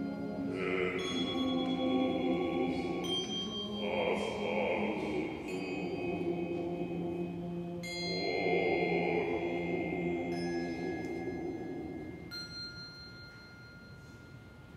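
Mixed choir singing slow, sustained chords, with clear bell-like tones struck about every two seconds that ring on over the voices. The singing dies away over the last two seconds.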